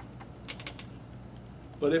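A quick cluster of faint clicks about half a second in, over a steady low hum, in a pause between a man's words; his voice comes back near the end.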